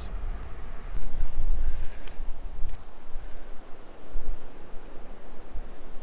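Lake Superior waves breaking on a sandy beach, with wind buffeting the microphone in gusts that come and go.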